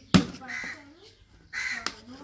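A sharp click as a metal tool pries at the rim of a plastic gear-oil bucket lid, with a second smaller click near the end. Harsh bird calls sound twice in the background, about half a second in and again near the end.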